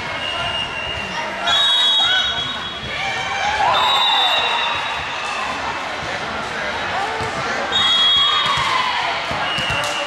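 Busy volleyball-gym din: players and spectators calling out and cheering, balls bouncing on the court, and three short, shrill referee's whistle blasts about one and a half, four and eight seconds in.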